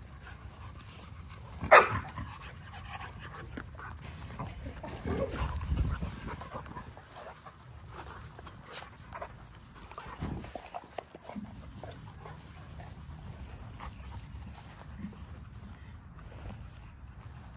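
XL American Bully dogs play-fighting, with panting and scuffling. One short, sharp dog cry comes about two seconds in and is the loudest sound.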